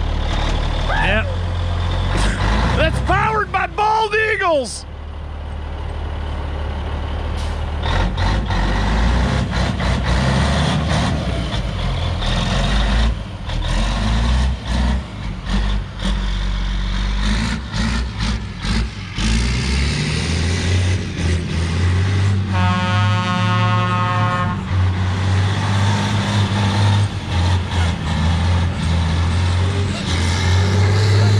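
Caterpillar diesel engine of a 1983 Peterbilt 362 cabover running hard as the truck is driven in donuts on snow, blowing black smoke. People whoop and laugh a few seconds in, and a steady held tone sounds for about two seconds about three-quarters of the way through.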